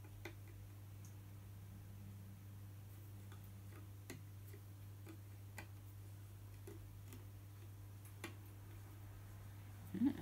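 Faint, scattered clicks and light taps from handling a frame loom and its warp threads, a few seconds apart, over a steady low hum.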